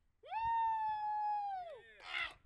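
A single long pitched note with overtones, held steady for over a second and then sliding down in pitch near the end.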